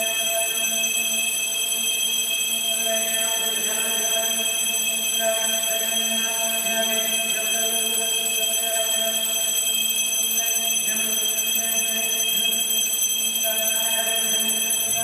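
Metal temple bells ringing without a break, a steady sustained ring with several high overtones and no gaps between strokes.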